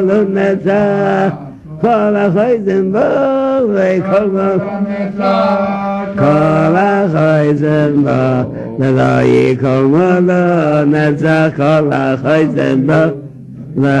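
A man's voice chanting a slow, wordless Hasidic niggun on long, sliding notes. The singing fades just before the end.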